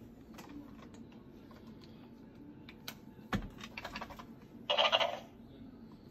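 Scattered soft clicks and taps, with a louder knock a little over three seconds in and a short raspy noise lasting about half a second near five seconds.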